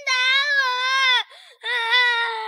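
A young boy crying loudly, wailing "hit me" in one long, high, wavering cry, then breaking into a second wail about a second and a half in.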